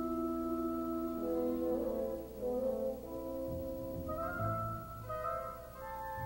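Symphony orchestra playing softly: a sustained chord in the clarinets and horns, with the line starting to move about a second in and lower instruments joining a little past halfway.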